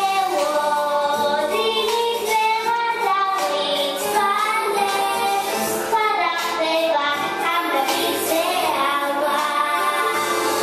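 A young girl singing a song solo over musical accompaniment, with long held notes and smooth slides between pitches.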